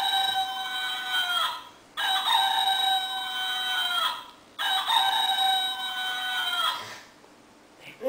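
Rooster crowing three times, each crow a long held call of about two seconds that drops in pitch at its end.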